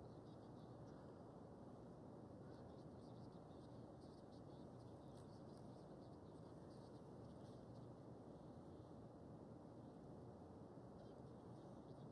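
Near silence: a steady low hiss with faint, irregular soft scratches of a paintbrush working oil paint on canvas.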